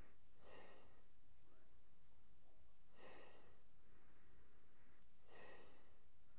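A man sniffing whisky rubbed onto the back of his hand: three short, faint sniffs through the nose, about two and a half seconds apart.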